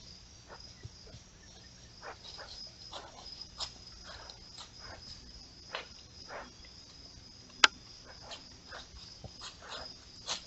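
Night insect chorus of crickets, a steady high trill, with irregular short rustles and clicks over it and one sharp loud snap about three-quarters of the way through.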